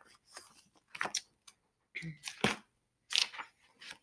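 A picture book being handled and opened: a few short paper rustles and crackles from its pages and cover.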